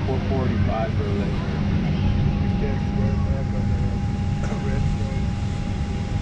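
Steady low rumble of an airliner cabin, with a thin steady whine over it and indistinct chatter of passengers.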